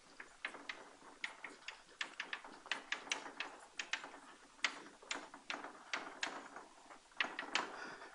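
Chalk tapping and scraping on a blackboard as a figure is drawn: a quiet, irregular run of short taps and clicks, several a second.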